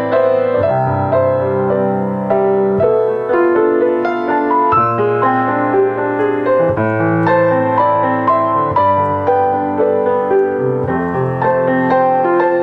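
Acoustic piano playing a slow, two-handed chordal passage in A minor, with held bass notes under a melody and the chords changing every second or two. It is the natural-minor version, using an E minor seventh rather than an E major seventh as the five chord.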